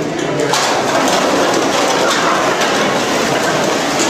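Costumes made of plastic bags, cans and bottles rustling and clattering as the wearers dance. A dense rustle swells about half a second in, with scattered clicks and knocks of the hanging containers.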